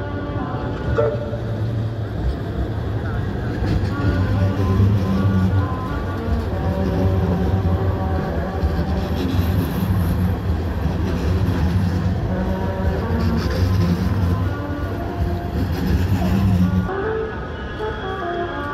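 A Manchester Metrolink Bombardier M5000 tram passing close by at low speed: a steady low electric hum with wheel-on-rail noise, louder as it draws alongside and stopping about a second before the end.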